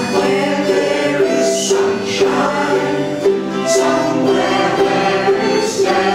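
A group of ukulele players singing a slow, gentle song together in unison, with ukuleles strummed beneath the voices.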